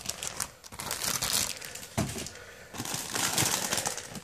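Clear plastic bags crinkling as bagged plastic model-kit runners are lifted and shuffled in a cardboard box, in irregular rustling bursts, with a single sharp knock about halfway through.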